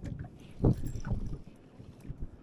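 Open-boat ambience on choppy water: irregular low thumps and buffeting from wind on the microphone and small waves against the hull, the loudest about two-thirds of a second in.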